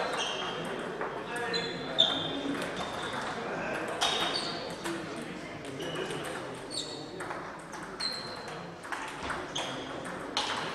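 Table tennis balls clicking sharply off bats and tables at an irregular pace in an echoing sports hall, the loudest hit about two seconds in, over a background murmur of voices.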